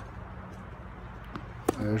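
Low steady hum of room tone under a pause in a man's narration, broken by a few sharp clicks, the loudest just before he starts speaking again near the end.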